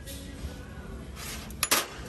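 Ceramic salt and pepper shakers clinking against each other as one is handled, a quick couple of sharp clinks near the end, over faint background music.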